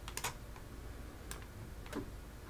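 A few faint, sharp clicks at a computer: two in quick succession just after the start, one past the middle and one near the end, over quiet room hiss.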